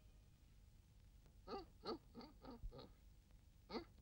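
A voice making a quick run of five short sounds, each dropping in pitch, starting about a second and a half in, then one more near the end; the first part is near silent.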